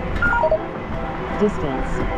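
A three-note descending electronic chime from a phone fitness-tracking app, marking a mile split just before its voice announcement.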